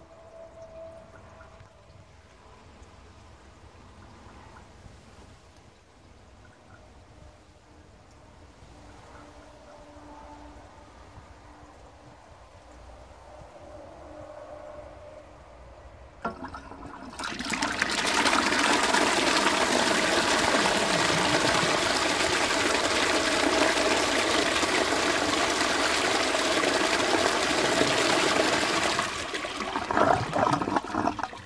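A 1939 Bolding three-gallon automatic urinal cistern flushing on its own. It is faint at first while the cistern tops up. About sixteen seconds in the siphon trips, and a loud rush of water pours down into the ceramic urinal bowl for about twelve seconds before cutting off, showing the old automatic flush still works.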